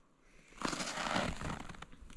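Rustling, crackling noise of a person shifting position on snow, starting about half a second in.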